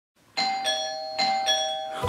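Doorbell chime ringing ding-dong twice: a higher note then a lower one, the pair repeated, each note ringing on and fading.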